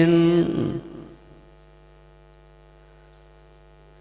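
A man's long held chanted note of Quran recitation breaks off about half a second in and dies away in reverberation, leaving a faint steady electrical mains hum through the microphone's sound system.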